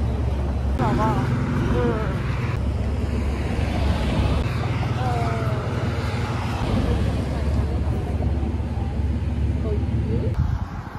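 Road traffic and wind on the microphone, a steady low rumble, with a few short high-pitched gliding sounds about a second in and again around five seconds in.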